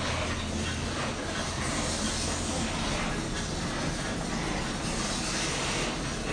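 Steady hissing noise over a low rumble, even throughout with no distinct events.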